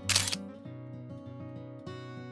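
Background music with steady notes over a repeating bass. Just after the start there is a short, sharp hiss of an edited-in sound effect lasting about a third of a second.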